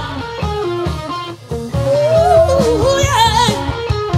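Live band playing: electric guitar carrying a bending, wavering melody over drums with cymbals and keyboards. The music thins out briefly just after a second in, then comes back in full.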